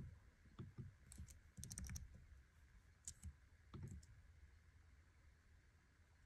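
Faint scattered keystrokes on a low-profile computer keyboard: a handful of quiet key clicks, some in a quick cluster between one and two seconds in, the last just before four seconds.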